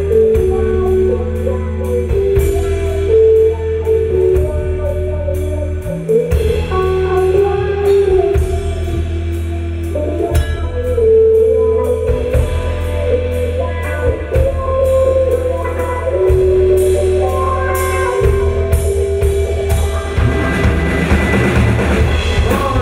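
Live rock band playing an instrumental passage: a hollow-body electric guitar plays a sustained, moving lead melody over a drum kit keeping time with regular cymbal strikes and a steady low part underneath.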